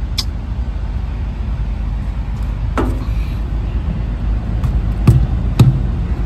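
Steady low rumble of an idling vehicle engine, with a few short sharp knocks: one near the start, one about halfway, and two close together near the end.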